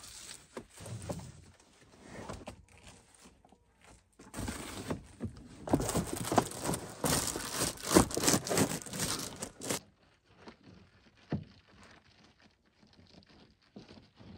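Reflective foil window shades crinkling and scraping as they are pressed into a minivan's windows, busiest in the middle stretch, then a single knock.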